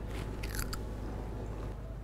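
A brief crunching bite into a snack from a foil packet, a short burst of crackles about half a second in.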